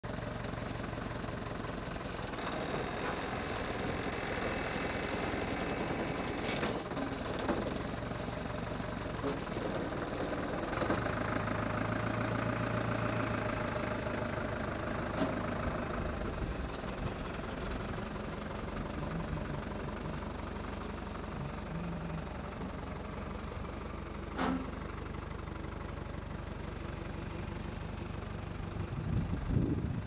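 Old forklift engine running steadily as it carries a trailer on its forks, swelling in sound for a few seconds about eleven seconds in. A high hiss runs from about two to six seconds in, and there is a single clank near twenty-four seconds in.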